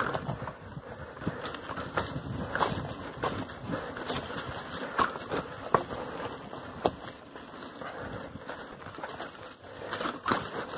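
Bicycle rolling fast over a rough dirt trail: tyres running on dirt and loose stones, with scattered clicks and knocks from the bike rattling over bumps, and a few brief squeaks around the middle.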